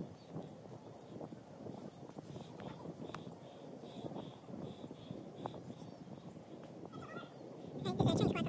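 Quiet outdoor ambience: a steady low rush of wind and distant noise, with a few faint clicks and, through the middle, a faint high chirp repeating about twice a second.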